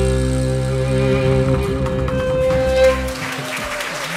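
Acoustic folk band holding a long chord: a fiddle note with slight vibrato over sustained double bass. The low notes drop out about three seconds in.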